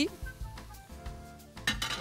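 Background music with a steady low beat, over light clinks of a glass tumbler against a glass bowl as cream is poured in. A brief burst of hiss comes near the end.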